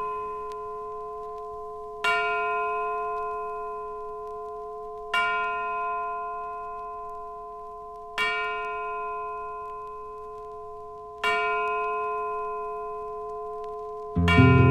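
A bell-like tone, the same pitch each time, struck four times about three seconds apart, each stroke ringing and slowly fading, as an interlude in a 1970s big band jazz recording. At the start the tail of the preceding brass chord is still dying away.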